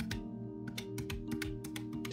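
Quick, uneven run of clicks from the round plastic keys of a desk calculator as numbers are punched in, about eight to ten presses a second, over soft background music.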